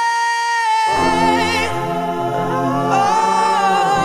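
Rock song vocals: a single high sung note is held over near-silent backing. About a second in, layered choir-like voices and sustained low notes come in underneath.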